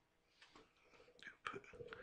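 Near silence with a faint whispered or murmured voice off-mic and a few soft clicks, starting about half a second in.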